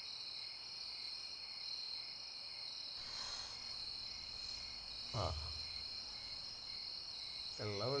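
Steady night chorus of crickets chirring, with a brief low voice sound about five seconds in.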